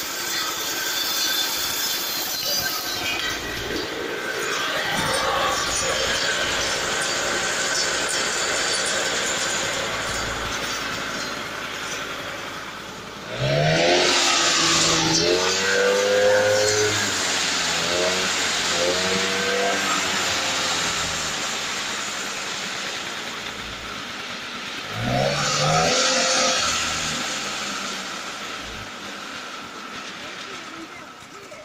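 Scooter engine running a homemade saw machine's blade, a steady mechanical drone with a high whine over it. The engine is revved up sharply twice, about halfway through and again near the end.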